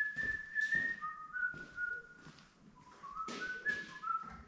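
A man whistling a tune: a long held high note, a few lower notes, then a run of notes stepping upward near the end. Light knocks and clatter from tools and things being moved around the shed sound under it.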